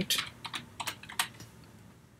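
Computer keyboard being typed on: a quick run of key clicks that thins out after about a second and a half.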